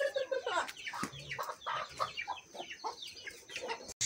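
Domestic chickens clucking in a run of short, quick calls, after a long held call trails off about half a second in. The sound cuts off suddenly just before the end.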